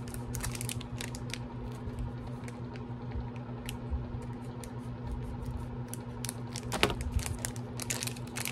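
Fingernails picking and scratching at a small sealed package, its card and wrapping giving a run of small irregular clicks and crinkles, with a louder cluster near the end, over a steady low hum.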